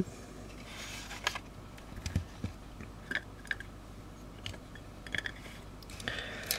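Small scattered clicks and light scrapes: a 46 mm Kenko UV filter being unscrewed from a camcorder's lens thread and handled.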